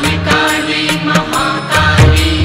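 Devotional Hindu mantra chant to the goddess Kali, sung over instrumental music with a steady beat of percussion strikes.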